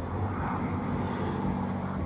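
Motor scooter engines running on the road, a steady low drone.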